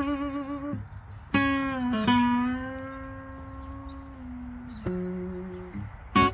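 Steel-string acoustic guitar played slowly: a few single notes plucked and left to ring out, the first wavering in pitch, a long note dipping as it fades, and a two-note pluck near the end.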